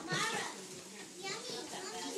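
Many young children talking and calling out over one another, a mixed babble of small voices in which no single voice stands out.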